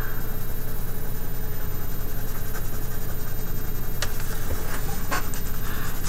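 A steady low electrical hum, with a few faint scratches of a coloured pencil stroking across paper in the second half.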